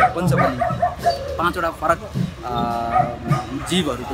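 People talking, with one short, steady pitched tone about two and a half seconds in.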